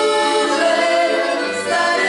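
A duet of two accordions accompanying three young singers who sing a song together.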